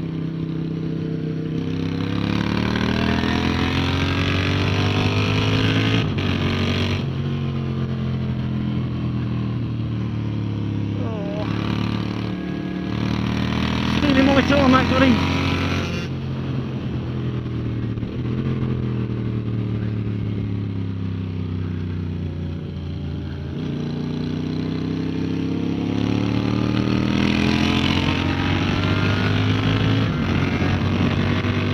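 Moto Guzzi V7's air-cooled V-twin engine at track speed, its revs rising and falling again and again through acceleration, braking and gear changes, with wind rushing over the bike-mounted camera. A brief louder, wavering burst about halfway through.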